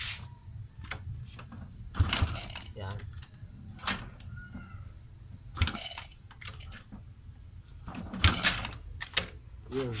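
Motorcycle kick-starter kicked four times, a couple of seconds apart, each kick a short clatter with a low thump as the engine is turned over without running. The drain bolt is out and the kicks push the last of the old oil out of the crankcase.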